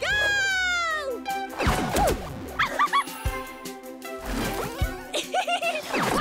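Upbeat children's cartoon music with a long falling vocal glide at the start, followed by several short squeaky cartoon vocal sounds and downward-swooping sound effects.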